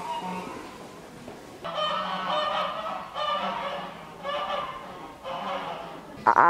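Domestic geese honking, with four bouts of calls about a second apart.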